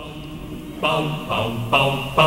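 Closing theme music begins about a second in: voices singing, three short notes in a row before the music settles into held tones.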